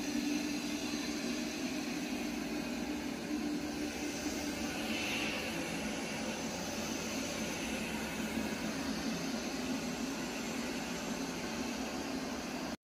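Eufy RoboVac X8 robot vacuum running on shag carpet: a steady whir from its twin suction motors and brushes, with a low hum under it.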